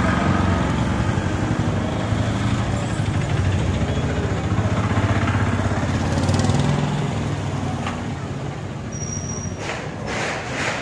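Car engine running close by at slow speed, a steady low drone that fades out near the end.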